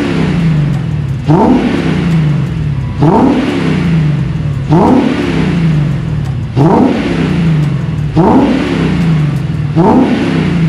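Infiniti M56's 5.6-litre VK56VD V8 being revved repeatedly through its exhaust, six blips about 1.7 seconds apart, each rising quickly and falling back to a fast idle. It is burning off a Seafoam intake-valve cleaning treatment.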